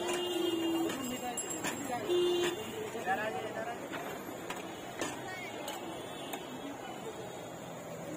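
Busy street ambience around a food stall: people talking in the background, two short horn toots in the first few seconds, and scattered clinks of metal utensils.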